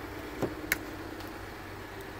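Steady low hum inside an SUV's cabin, with two short clicks about half a second and three quarters of a second in.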